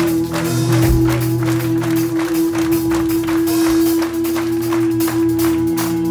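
Rock band playing live, heard from the audience: a long held note over bass notes and quick, evenly spaced percussion hits, with no singing.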